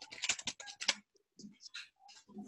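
Computer keyboard being typed on: a quick run of key clicks in the first second, then a few scattered, fainter keystrokes.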